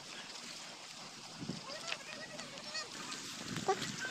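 Several short bird calls over a faint outdoor background: a quick run of small chirps past the middle, and a louder short call just before the end.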